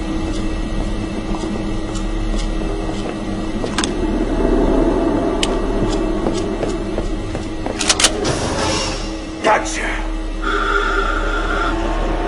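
Film soundtrack: background music over a steady low drone, with a few sharp knocks about eight and nine and a half seconds in.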